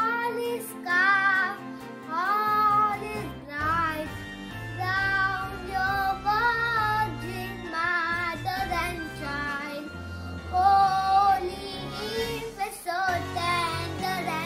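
A young boy singing a song over an instrumental backing track, holding some of his notes long.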